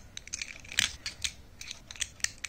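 Small plastic clicks and taps from hands handling a Bluetooth shutter remote, a scatter of short sharp clicks with the loudest a little under a second in.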